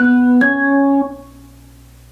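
Keyboard with a piano sound playing B and then the C-sharp a whole step above, the second note struck about half a second after the first. Both notes ring and fade within about a second and a half.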